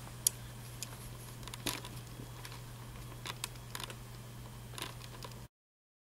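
A handful of light, sharp clicks and taps, the first the loudest, over a steady low hum; the sound cuts out entirely about five and a half seconds in.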